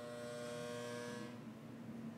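A faint steady electrical buzz over a low hum; the buzz stops about one and a half seconds in while the hum carries on.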